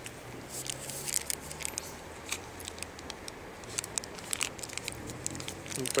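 Plastic wrapper of a Peperami meat stick crinkling and tearing as it is peeled off by hand, a scatter of short sharp crackles, over a faint low hum.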